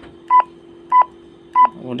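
Motorola GP2000 handheld radio's key beeps: three short, evenly spaced beeps about 0.6 s apart as one key is pressed repeatedly. Each beep confirms a press that steps the radio to the next programming-menu setting. A faint steady hum runs underneath.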